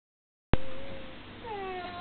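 A single piano note struck about half a second in rings and fades. Near the end, a young girl's high-pitched squealing laugh glides downward.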